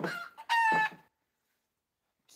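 A rooster crowing once, about a second long, ending on a held note.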